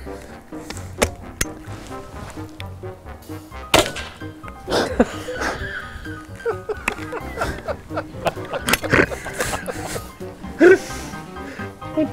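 Background music with a single sharp shotgun report about four seconds in: an over-and-under shotgun firing a light homemade cartridge loaded with rice instead of shot. A few lighter knocks and a short voice sound come later.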